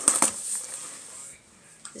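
Handling noise as an airsoft gun is put back into its box: a few sharp clicks and knocks at the start, then rustling that fades away about a second and a half in.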